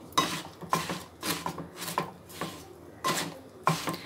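Wooden spatula stirring and scraping grated coconut and jaggery around a metal pot, in repeated short strokes about every half second.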